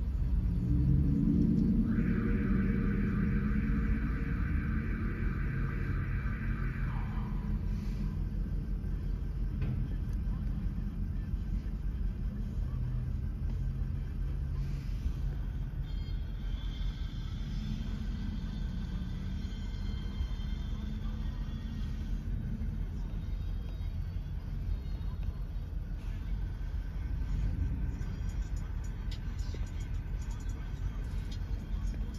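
Steady low rumble of idling vehicle engines. From about two to seven seconds in, a higher steady tone sounds over it and drops away in pitch as it ends.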